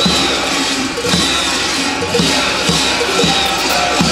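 Many large kukeri costume bells clanging together as the dancers move, with a drum beating steadily about twice a second underneath.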